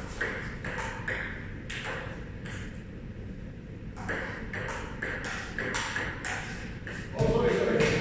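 Table tennis ball clicking off paddles and table in a rally, with a short lull in the middle, then a loud voice near the end as the point ends.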